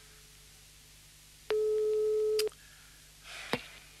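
Telephone sound effect: one steady mid-pitched ringing tone on the line, about a second long, as a call goes through. Shortly after come a brief rustle and a sharp click as the receiver is picked up.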